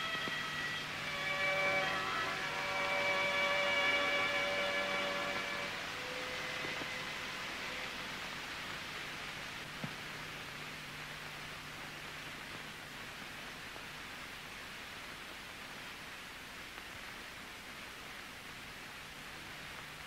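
Soft background music of held notes fades out over the first six seconds, leaving the steady hiss and low hum of a 1936 film's worn soundtrack, with a single click near the middle.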